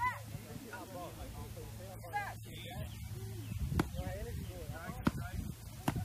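Wordless shouts and grunts during baton strike drills, with three sharp blows of a padded training baton on a padded Redman suit in the second half.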